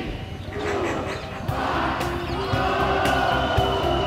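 A large crowd's voices rise into cheering. Background music with steady notes comes in about halfway through.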